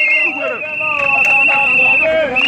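A plastic whistle blown in one long, shrill, steady blast that stops at the end, over the voices of a marching crowd of protesters.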